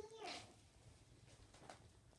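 Near silence: quiet indoor room tone, after a short voice sound trailing off at the very start, with a couple of faint clicks near the end.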